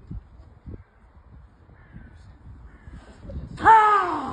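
A man's loud, drawn-out shout that falls in pitch, about three and a half seconds in, reacting to a putt rolling out on an artificial-turf mini-golf green.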